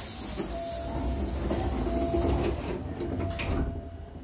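Hankyu train's double sliding doors closing: a sudden loud hiss of air from the door engines at the start, a low rumble as the doors travel for about three seconds, and a knock as they shut near the end.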